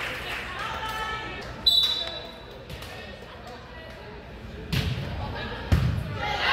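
A volleyball referee's whistle gives one short, high blast in an echoing gym. About three seconds later a volleyball makes two loud thumps about a second apart. Voices of players and spectators are heard around it.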